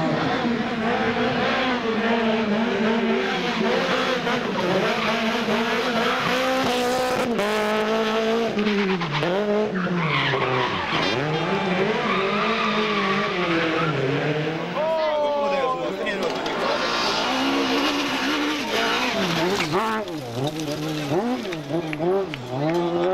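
Rally car engine revving hard and dropping again and again as the car accelerates and brakes through tight tyre chicanes, with tyre squeal in the turns.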